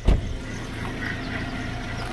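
A sharp low thump on the microphone just after the start, then a steady low engine hum running evenly.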